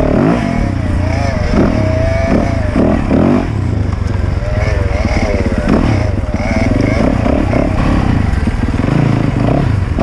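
Dirt bike engine at close range, its pitch rising and falling as the throttle is worked on a rough trail.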